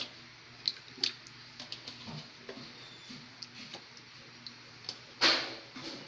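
Faint scattered ticks and clicks from a wok of sinigang broth with radish slices heating on a gas stove. About five seconds in comes one short, louder scraping rush as a hand works in the pan.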